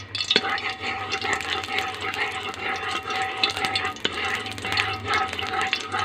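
Cooking oil heating in an aluminium pot, with a steady hiss and light crackling that starts about a third of a second in.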